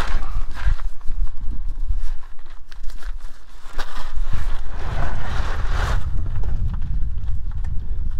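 Hands unhooking a synthetic soft shackle and recovery strap from a truck's frame over gravel: scattered clicks and knocks, with a longer rustling scrape about five seconds in, over a steady low rumble.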